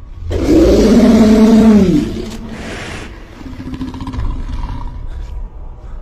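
A large reptilian film monster's roar: one loud, drawn-out cry that starts a moment in, lasts under two seconds and drops in pitch as it ends, followed by a quieter low rumble.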